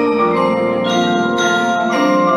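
A percussion front ensemble of several marimbas and other keyboard mallet instruments playing together, sounding full ringing chords. Two sharp, bright accents land around the middle.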